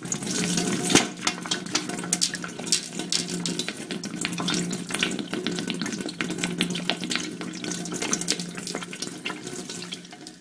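Water running hard and splashing, with a steady low hum under it; it comes on suddenly and drops away at the end.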